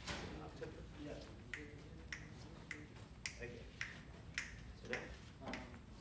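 Finger snaps keeping a steady beat, a little under two a second, setting the tempo for a tune.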